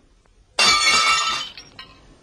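Dishes smashing: one sudden crash about half a second in, with shards ringing and clinking as it dies away, and a few small clinks near the end.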